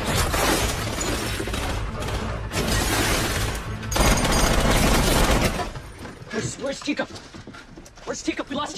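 Film action sound effects: a loud, dense crashing and shattering din mixed with music, which falls away suddenly about five and a half seconds in, leaving quieter scattered sounds and voices.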